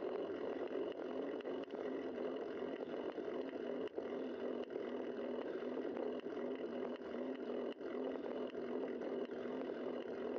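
Steady wind and tyre-on-pavement noise from a bike-mounted camera on a moving bicycle, with scattered faint clicks and rattles from the bike.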